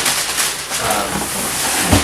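Cardboard box and packing material rustling and scraping steadily as they are handled, with a knock near the end.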